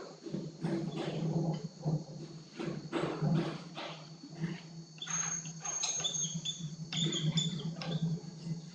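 Whiteboard marker squeaking and scratching on a whiteboard as a zigzag line is drawn in short, quick strokes, with high-pitched squeals in the second half.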